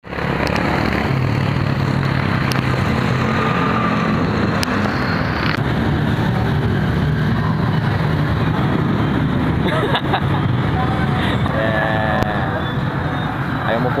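Loud, steady outdoor street noise of road traffic, with wind rushing over the microphone. A few voices and laughter come through near the end.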